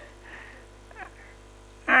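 A short lull in a man's talk over a podium microphone: faint room sound with a few weak traces, then, near the end, his voice comes back loud with a wavering, laughing pitch.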